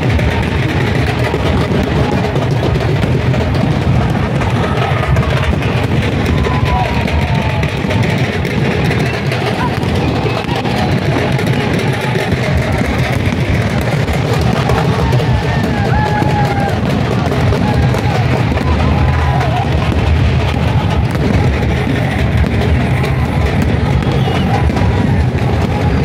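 Loud music with a drum beat played over a cricket stadium's PA system, mixed with the steady noise of the crowd in the stands.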